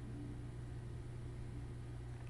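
Quiet room tone: a steady low hum with faint hiss and nothing else happening.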